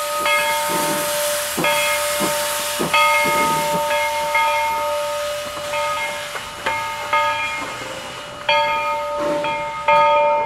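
Two-foot gauge steam locomotive B&SR #7 getting under way, its bell ringing with a strike roughly every second, each ring dying away before the next, over a steady hiss of steam from its open cylinder cocks and soft exhaust chuffs.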